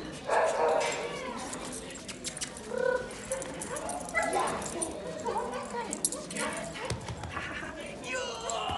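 A dog barking several times, the loudest about half a second in, with people talking in the background.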